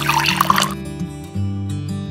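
Cartoon sound effect of oil being poured into a wok: a short liquid splash lasting under a second at the start, over steady background music.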